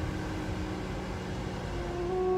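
Steady hum and hiss inside a moving car's cabin: engine and road noise with the air-conditioning fan blowing.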